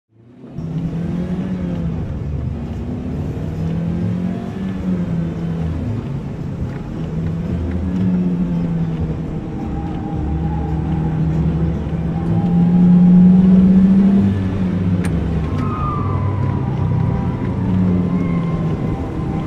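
Radiator Springs Racers ride vehicle rolling along its track, heard from on board: a steady low rumble with a shifting hum. It fades in about half a second in and swells louder about two-thirds of the way through.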